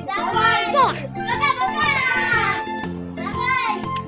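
Children's high-pitched squeals and cries, in several short bursts, over steady background music.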